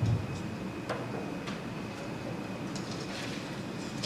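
Room noise over the church PA with a faint steady high whine, a low microphone thump right at the start and a sharp click about a second in, then a soft rustle of paper being handled near the end.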